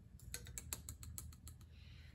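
Soil being spooned into a small plastic pH test-kit tube: a run of faint, irregular light clicks and taps as the spoon and soil grains hit the plastic.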